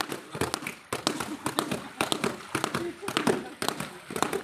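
Laundry being washed by hand in river water: sharp, irregular slaps and knocks, several a second, as wet cloth is beaten and worked, with people talking.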